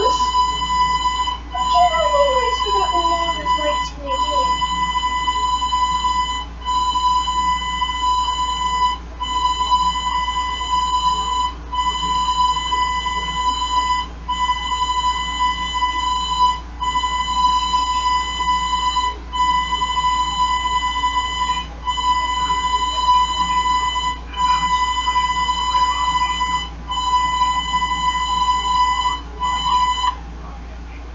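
A steady, buzzy electronic beep tone coming from a small TV's speaker, held for about two and a half seconds at a time with a short break between, over a constant low electrical hum.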